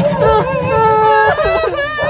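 Several young women crying in fright, their sobbing, whimpering voices overlapping in long, wavering wails.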